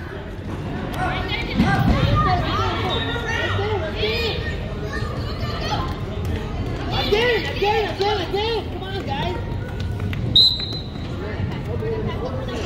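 Children's and adults' voices calling and shouting across an echoing gym hall during a kids' indoor soccer game, with dull thuds of the ball on the hard floor. A short high tone sounds about ten seconds in.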